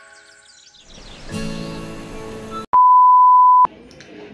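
Background music fading out, then a short stretch of music, cut off by a loud, steady, single-pitch electronic beep lasting about a second near the end.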